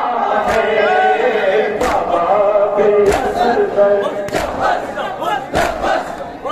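Men's voices chanting a noha, a Muharram lament, together into a microphone. The crowd's chest-beating (matam) lands as sharp strikes about once every 1.3 seconds.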